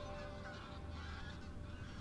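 Geese honking faintly in short calls, over the tail of fading background music.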